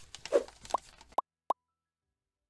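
Animated logo sound effects: a rush of quick swishing strokes, then a few short, bright pops, the last about a second and a half in.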